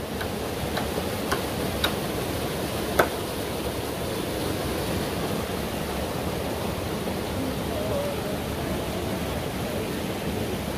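A mountain stream rushing over rocks and spilling through a narrow rocky channel, a steady rushing noise. A few sharp clicks sound within the first three seconds.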